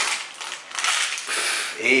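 Baking paper crinkling and rustling as it is handled on a metal baking tray.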